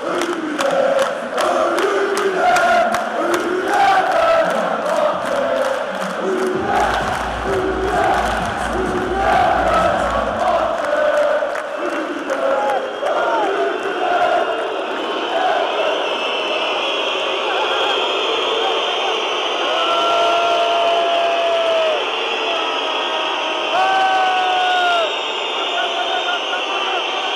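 Large crowd of basketball fans chanting in unison with clapping. About halfway through, the chant gives way to a steadier, higher din of crowd whistling and shouting.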